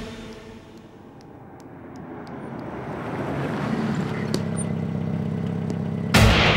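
A car approaching and pulling up, its sound growing louder over the first few seconds, then its engine idling steadily.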